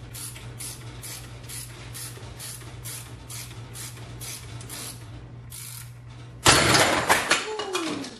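Steady ratchet clicks, about two a second, as the screw of a Powerbuilt strut spring compressor is wound tighter on a compressed coil spring. About six and a half seconds in comes a sudden loud bang and metallic clatter as the compressed spring lets go and swings out of the compressor's jaws, with a falling ring from the spring near the end.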